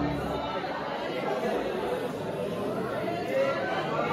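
A brass band's last held chord, tubas in it, cuts off right at the start, followed by many voices chattering at once.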